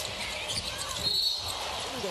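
A basketball dribbled on a hardwood arena court, heard over the general noise of the arena crowd, with a short high-pitched tone about a second in.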